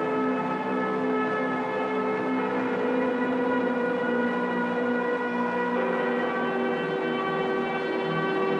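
Beatless passage of electronic techno music: a sustained synthesizer chord of several held tones with no drums, the notes shifting about two and a half seconds in and again around six seconds in.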